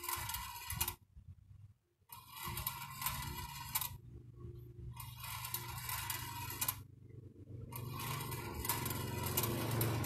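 Steel balls clicking and rattling as they roll along a homemade bent-wire marble track, with a small electric motor humming as it turns the wire spiral lift. The sound cuts out briefly three times.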